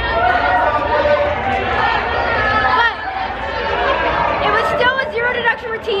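Several excited young voices talking and laughing over one another, a group's chatter with no single clear speaker.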